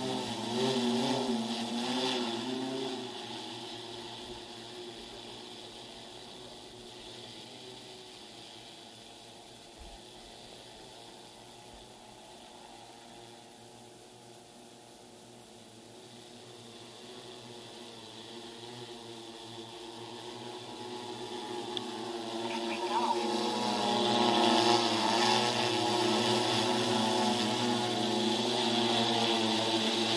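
Agricultural multirotor spray drone's rotors droning with a wavering pitch: loud at first, fading as it flies away, then growing loud again from about two-thirds through as it comes back overhead.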